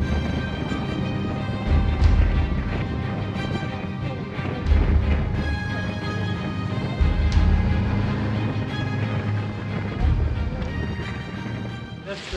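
Background music with held tones and a heavy bass beat that hits about every two and a half seconds.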